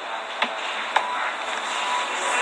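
Two short, sharp clicks about half a second apart over a steady background hiss.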